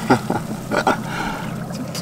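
Seawater sloshing and dripping in a crevice between jetty rocks, with a few sharp splashes in the first second and a steady low drone underneath.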